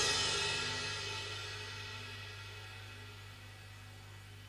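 The final chord of a stoner rock song ringing out: cymbal wash and sustained amplified tones fade slowly away, leaving a steady low hum underneath.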